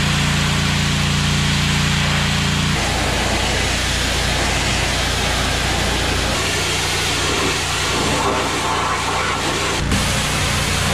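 Pressure washer running: a steady hiss of high-pressure water spray striking the fiberglass deck, over the low steady hum of the washer's motor. The hum changes pitch twice, about three seconds in and again past six seconds.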